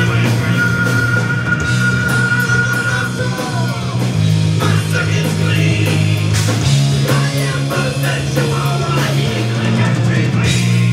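Live rock band playing: electric guitars, bass and drum kit, with a long held high note in the first few seconds and the bass line shifting pitch twice.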